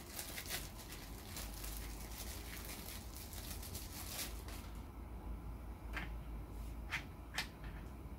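Hand-handling noise of small microscope parts: a dense crackly rustle for the first half, then quieter, with a few sharp light clicks near the end as parts are picked up and fitted.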